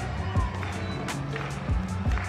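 Music with a driving drum beat: deep kick-drum thumps and sharp high hits.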